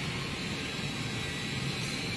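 Steady mechanical hum and hiss, even throughout, with no knocks or rhythm.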